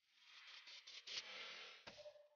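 Near silence: a faint hiss that swells and fades, with one sharp click near the end.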